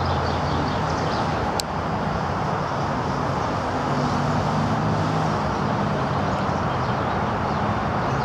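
Steady outdoor background rumble with a low droning hum that shifts in pitch, faint bird chirps and one sharp click about a second and a half in.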